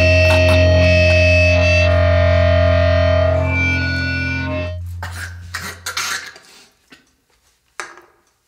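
The end of a hardcore punk song: the band's last sustained, distorted chord rings out and fades away over about five seconds. A few scattered short clicks and knocks follow, then near silence.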